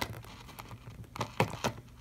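A few light, separate clicks and taps of plastic toy figurines being handled and set down on a tabletop, most of them in the second half.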